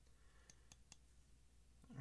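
Near silence with three faint, sharp clicks of small metal knife parts being handled, coming about half a second to a second in, while a folding knife lies disassembled with its pivot removed.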